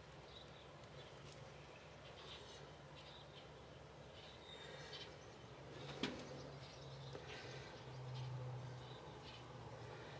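Faint outdoor ambience of scattered small bird chirps over a low steady hum, with one sharp click about six seconds in from the manual caulking gun being worked.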